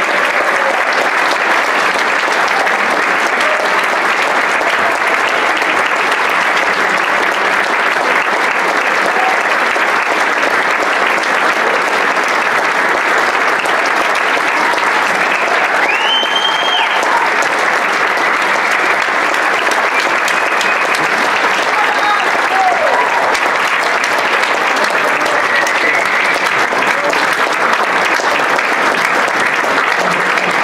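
A large audience applauding steadily, with a few voices calling out over the clapping about halfway through.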